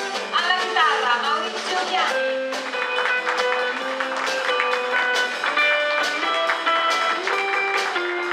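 Live duo of upright double bass and guitar playing an Abruzzese folk song, with the guitar picking a run of single notes. A voice sings a brief wavering phrase in the first two seconds.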